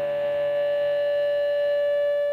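A distorted electric guitar chord held at the opening of a late-1960s rock demo, ringing at an even level with one note standing out above the rest.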